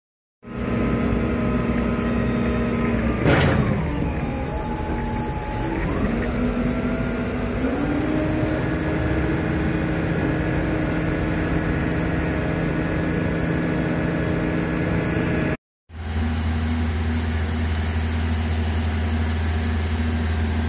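A heavy-equipment diesel engine runs steadily. About three seconds in, a loud sharp sound comes as the engine speed drops, and the speed then picks up again in two steps. After a brief cut near the end, an engine runs on with a deep steady hum.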